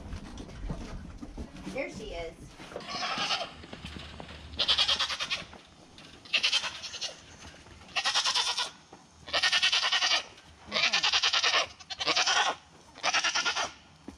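A goat bleating loudly over and over: about seven bleats, each under a second long, coming roughly every second and a half after a quieter start.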